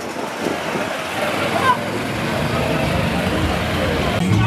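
Road traffic noise of vehicles, including a loaded pickup truck, moving along a crowded street, with people's voices mixed in.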